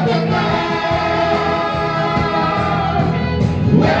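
Several men singing a song together through microphones over music accompaniment, with a bamboo flute playing along.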